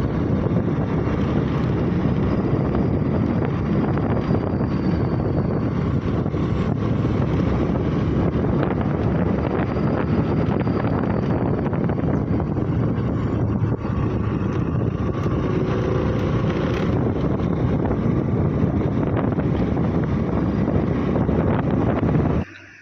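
Steady rush of wind buffeting the microphone together with the running of a motor scooter being ridden along a road.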